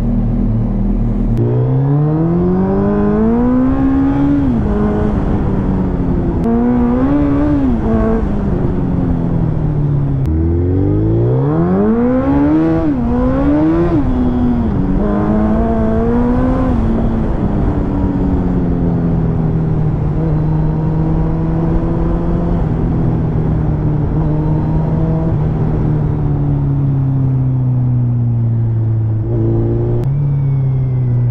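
Suzuki Hayabusa's inline-four engine heard from on board: a steady idle, then the bike pulls away, its pitch climbing and dropping back at each upshift in several surges. It then holds a steady cruise with the pitch slowly easing down, and picks up again near the end.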